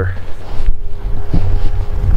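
Wind buffeting the camera microphone, a loud, low rumble throughout. A faint steady hum joins it partway through.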